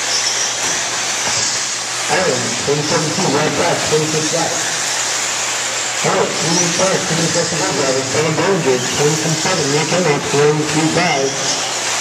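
Voices talking over a steady hiss, with the high whine of electric 1/8-scale RC buggies rising and falling as they race on the dirt track.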